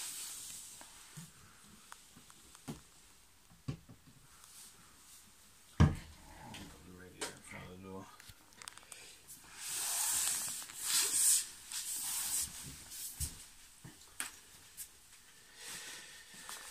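Handling and rustling noises: scattered small clicks, a single sharp thump about six seconds in, and a burst of rustling a few seconds later.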